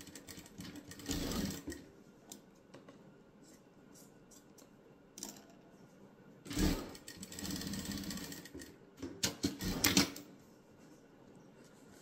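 Industrial sewing machine stitching strips of cotton drill onto a patchwork block in stop-start runs: a short run about a second in, a longer run of about two seconds past the middle, and a few quick bursts a little later.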